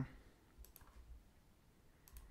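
A few faint computer mouse clicks in quick succession a little over half a second in, against near silence.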